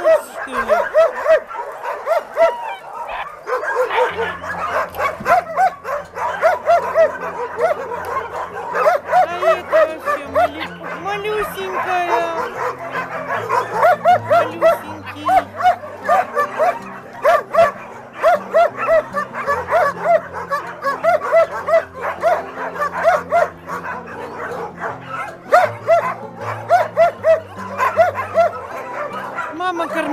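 Puppies yapping and yipping over and over, short high barks about three a second, with some whimpering. From about three seconds in, background music with held low notes plays underneath.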